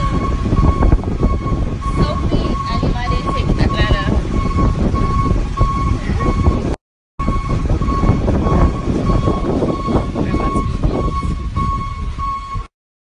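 Loud rumble of a moving train heard from inside the car, with a high tone pulsing steadily about twice a second over it. The sound cuts out for a moment near the middle.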